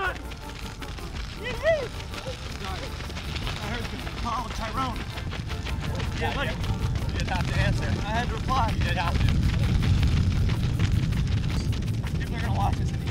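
Low wind rumble on the microphone that builds through the second half, under background music with a wavering melody.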